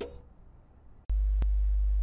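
A faint fading tail of an intro sound effect, then about a second in a steady, very low hum switches on abruptly, with a single click shortly after.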